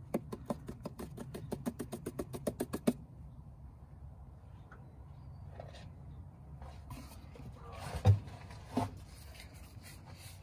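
Motor oil glugging out of a plastic jug into a funnel, a fast run of gulps about eight a second for roughly three seconds. Two dull knocks follow, about eight and nine seconds in.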